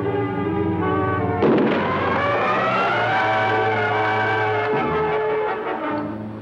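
Dramatic orchestral film score with a sudden explosion about a second and a half in, a demonstration charge of detonating cord going off; the music carries on over the blast.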